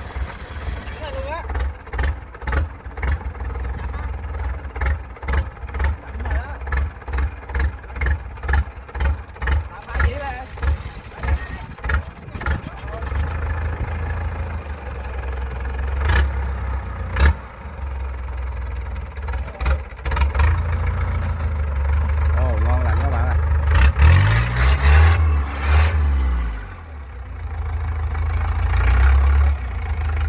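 Kubota DC-70 combine harvester's diesel engine running under load as the loaded machine crawls on its tracks over steel ramp plates, with a regular clanking about twice a second through the first dozen seconds. Around 24 seconds in the engine note dips and rises again as the load changes, the loudest part.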